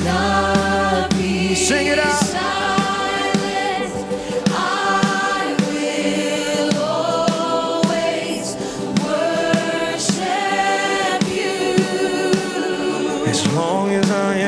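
Live contemporary worship band: a lead singer and a group of backing vocalists sing held notes together over electric guitar and a steady drum beat.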